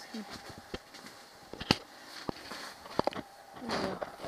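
Several sharp knocks and clicks, the loudest a little under two seconds in, with low voices and a rustle of handling near the end.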